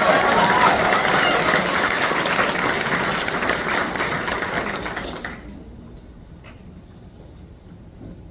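Audience applauding, a dense patter of many hands clapping that dies away about five seconds in.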